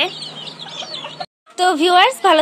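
Young chicks peeping: faint, high, thin calls that slide downward, for just over a second. The sound then cuts off abruptly, and a woman's voice follows.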